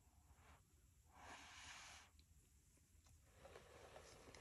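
Faint breath blown through a jumbo paper straw onto wet acrylic paint to blow out a bloom: a short puff about half a second in, then a longer puff of about a second.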